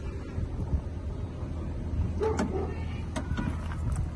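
Porsche Macan's powered tailgate motor running as the tailgate closes, with a couple of short clicks near the end as it latches, over a steady low hum.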